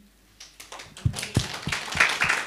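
Scattered hand claps begin about half a second in and build into light applause.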